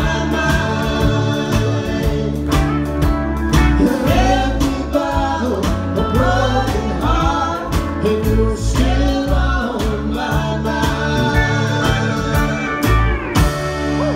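Live honky-tonk country band playing with a lead vocal: acoustic guitars, pedal steel, electric guitar, electric bass and drums keeping a steady beat.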